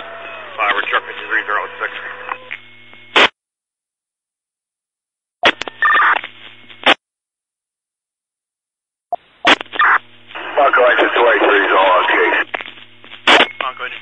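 Fire department two-way radio traffic heard through a scanner: several short transmissions, each starting and ending with a squelch click, with a steady hum under them and muffled, unclear voices. There is dead silence between transmissions, and a new one keys up near the end.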